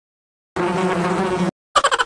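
Edited-in sound effects. After a moment of dead silence comes a steady buzzing tone lasting about a second. A brief gap follows, then near the end a rapid, even stutter of short pulses starts.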